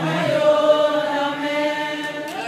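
Voices singing one long held note at the end of a chanted gospel refrain, echoing in a church hall.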